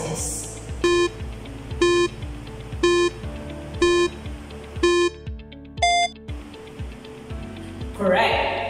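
Countdown-timer sound effect beeping once a second, five short beeps, then a different, higher final tone about six seconds in marking time up, over background music with a steady beat.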